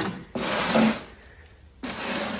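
Two short bursts of rustling, rubbing noise, the first louder and the second starting near the end, as leaves and potted seedlings are brushed and handled at close range.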